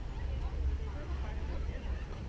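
Faint, indistinct voices of people talking at a distance, over a steady low rumble.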